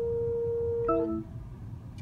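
BMW 740i Park Distance Control sounding a continuous warning tone, the sign that the car is very close to the obstacle behind. The tone cuts off about a second in as a short chime sounds, marking the end of the self-parking manoeuvre with the car secured against rolling.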